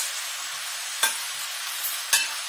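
Diced sausage, bread, tomatoes and pickles sizzling steadily in a hot frying pan. A single sharp clink about halfway through as a spoon scrapes against the plate.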